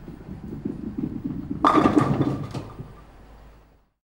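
A bowling ball rolling with a low rumble, then crashing into the pins about one and a half seconds in. The pins clatter for about a second and die away.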